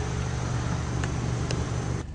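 Steady low rumble of an idling car engine, with a couple of faint clicks about a second and a second and a half in.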